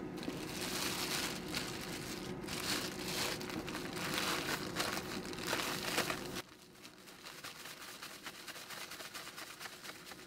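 Thin clear plastic bag crinkling and rustling as the agar powder and granulated sugar inside are shaken and kneaded together, the dry mix for a jelly. The crinkling stops suddenly about six seconds in.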